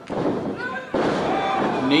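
Two sharp thuds about a second apart from a wrestling knee strike and a body driven down onto the ring mat, each followed by a wash of noise in the hall.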